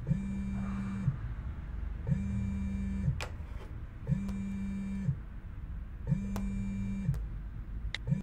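A phone's electronic ring tone: a steady low tone sounding for about a second, then a second's pause, four times over, with a few faint sharp clicks in between.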